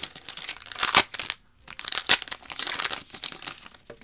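Foil trading-card pack wrapper being torn open and crinkled by hand: a rapid run of crackles, loudest about a second in, with a brief pause about a second and a half in.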